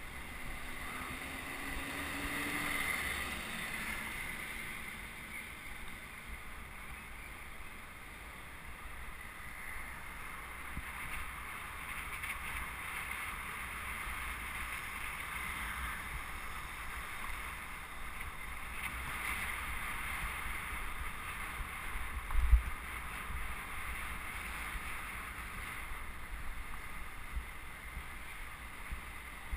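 Wind buffeting the microphone and road rumble from a camera riding on a moving bicycle in city traffic, steady throughout. A single sharp thump about three-quarters of the way through.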